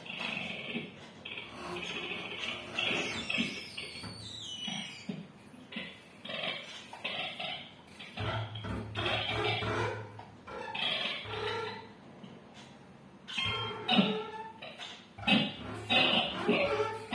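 Free improvisation on bowed double bass and guitars: rough, scraping bowed-bass sounds and noisy string textures in irregular, stop-start bursts, with a sharp loud accent about two seconds before the end.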